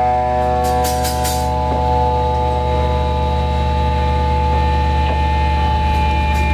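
Electric guitars through amplifiers letting a chord ring on and slowly fade, over a steady low drone, with a few light cymbal strokes about a second in.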